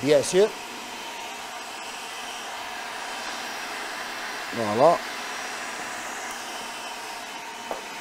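Electric food processor running steadily, blending chickpeas and tahini into hummus.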